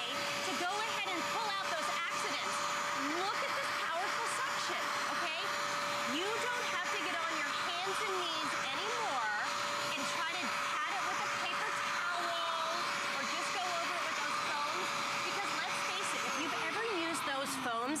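Bissell Spot Clean Pro portable carpet deep cleaner running with a steady motor whine and suction hiss as its hand tool scrubs a spill out of the carpet. Near the end the motor is switched off and its pitch falls as it winds down.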